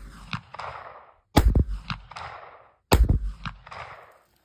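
.30-06 rifle firing: two shots about a second and a half apart, after the echo of a shot fired just before. Each shot's echo rolls off over about a second.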